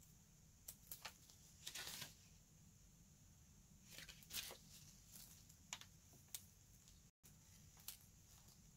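Near silence with a few faint paper rustles and small ticks as planner stickers are peeled from a sticker sheet and handled.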